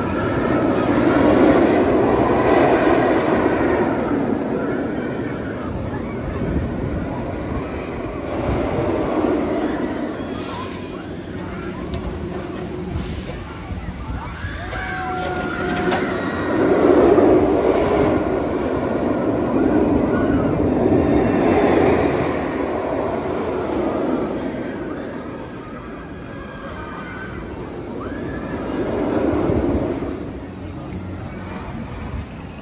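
Steel launched shuttle roller coaster, Mr. Freeze: Reverse Blast, its train rumbling along the track in repeated swells as it runs back and forth over the course.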